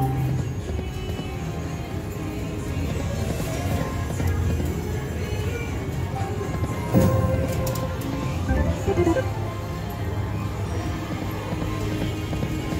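Lock It Link Diamonds slot machine playing its game music and reel-spin sounds through repeated spins, with a sudden louder hit about seven seconds in.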